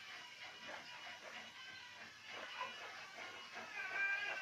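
Large dressmaking scissors snipping through cotton cloth with soft, repeated crunches, under faint background music that swells near the end.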